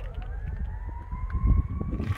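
A vehicle siren wailing: its pitch rises through the first second, then holds high and wavers slightly, over a low irregular rumble.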